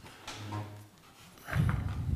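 A man clearing his throat close to a table microphone: a short low hum, then a rough low throat-clearing burst just before he speaks.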